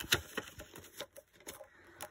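Polymer banknotes and clear plastic binder pockets being handled: a sharp click at the start, then scattered faint rustles and light ticks.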